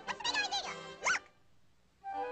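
High-pitched cartoon chipmunk squeaks and chatter: a quick run of rising and falling squeals that stops a little over a second in.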